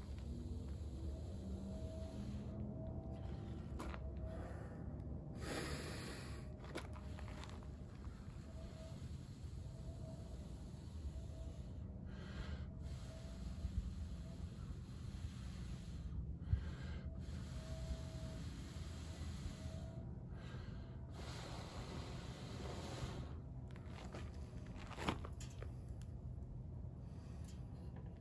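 Soft, intermittent breaths blown into a smouldering tinder bundle, feeding air to a hand-drill friction-fire ember to bring it to flame.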